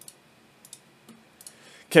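A few faint, scattered clicks of a computer mouse being used to work a program menu.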